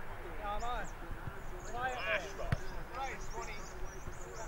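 Voices shouting and calling across a football ground during open play, with one sharp thump about two and a half seconds in.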